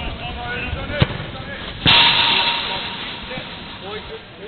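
Small-sided football match on an artificial pitch: players calling out, a sharp kick of the ball about a second in, then a loud sudden crash about two seconds in that dies away over about a second.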